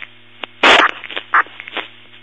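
A brief two-way radio transmission with no clear words, heard over a scanner: the mic keys up with a loud burst of noise, a steady hum and scattered crackles run beneath, a louder burst comes about two-thirds of a second in, and it unkeys with a final burst just at the end.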